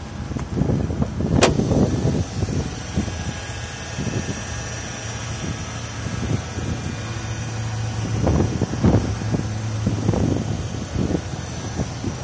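VW Polo 1.6 four-cylinder petrol engine idling steadily, with a sharp click about a second and a half in.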